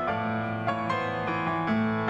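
Piano accompaniment playing an instrumental passage with no voice, a new note or chord every half second or so.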